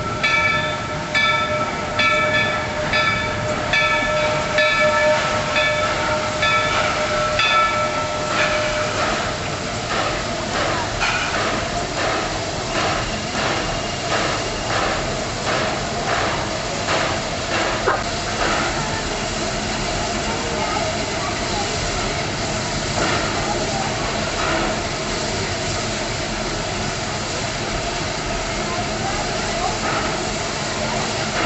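Walt Disney World Railroad #3 "Roger Broggie", a 4-6-0 steam locomotive, arriving at a station. For about the first nine seconds a bell rings at an even rhythm. Then comes the running of the engine and its rolling wheels, with steam hissing as it draws up to the platform.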